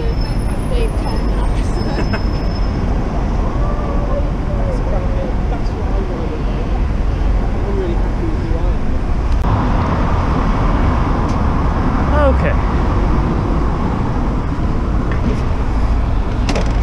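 Steady city street traffic noise with passers-by talking nearby; the traffic swells for a couple of seconds about ten seconds in.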